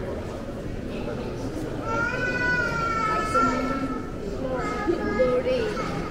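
Murmur of visitors' voices in a large hall, with a very high-pitched voice calling out in a long, slightly falling call about two seconds in and a shorter call near the end.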